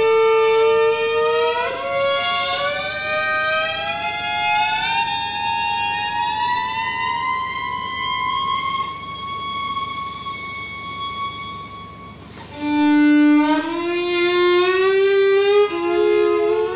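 Solo violin bowing a long, slow upward glissando that climbs steadily for about ten seconds while fading. About twelve seconds in, a louder low note enters and slides upward in steps.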